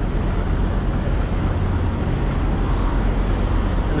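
Steady low rumble of idling diesel semi-trucks, with no single event standing out.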